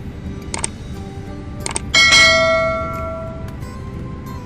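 Subscribe-button animation sound effect: two quick double mouse-clicks about a second apart, then a bright bell chime about two seconds in that rings and fades away over a second and a half.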